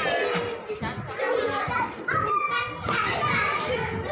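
Young children shouting and chattering at play, with music in the background.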